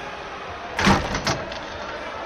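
Steady ice-hockey arena background noise with a quick cluster of three sharp knocks about a second in, the first the loudest.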